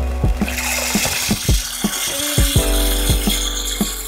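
Background music with a steady beat, over a rattling hiss of dry rice grains pouring out of a plastic bag into a pressure cooker half full of water.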